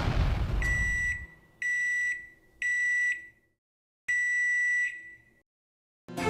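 The rumbling tail of an explosion fading out in the first second, then four high-pitched electronic beeps: three short ones about a second apart and a longer fourth.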